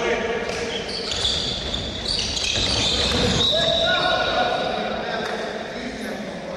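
Handball game in a large sports hall: the ball bouncing on the wooden court, with players and spectators calling out and high squeaks from the play.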